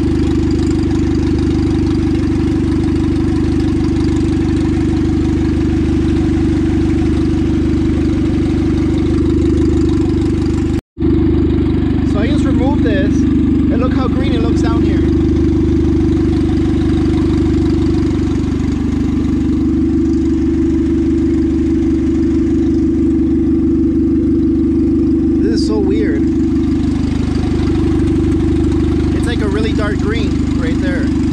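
Turbocharged Honda D16 four-cylinder engine idling steadily with the radiator open while the cooling system is burped of air. The sound drops out for an instant about eleven seconds in.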